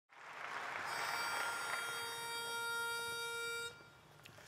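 Logo sound sting: a swell of noise that settles from about a second in into a held, steady tone with many overtones, cutting off suddenly just before the end.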